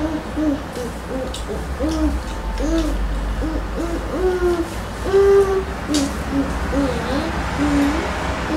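A person humming a string of short, bending closed-mouth 'mm' notes, about two a second, with one longer, louder note a little past the middle.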